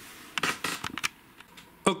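A short run of light clicks and rattles, small objects being handled, about half a second in, then a quiet stretch before a man starts speaking at the very end.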